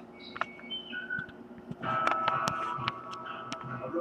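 Music from a television commercial, with held tones coming in about two seconds in and a few sharp clicks over it.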